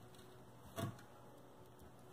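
Faint handling noise from double-sided craft tape being pulled and handled, with one brief rustle about a second in over a low steady room hum.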